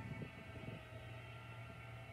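Quiet, steady droning background music: sustained tones over a low hum.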